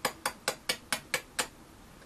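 A quick, even run of light taps, about four or five a second, seven in all, stopping about a second and a half in.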